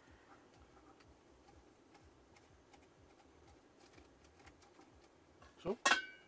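Faint, steady hiss of a gas hob burner under an Omnia stovetop oven, with light ticks. Near the end, a loud metallic clatter with a brief ring as the oven's metal lid is picked up and handled.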